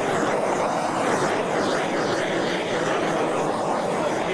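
Steady hiss of a Bernzomatic TS4000 propane hand torch's flame, held burning as it is swept over wet epoxy to pop surface bubbles.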